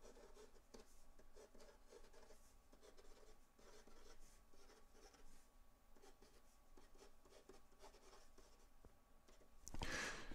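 Felt-tip marker writing on paper, a faint run of short stroke scratches. A brief louder noise comes near the end.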